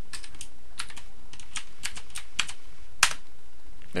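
Computer keyboard keys clicking in short, irregular runs, with one sharper click about three seconds in, over a steady faint hiss.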